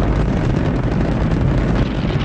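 Space shuttle rocket engines in flight: a loud, steady rumble of rocket exhaust.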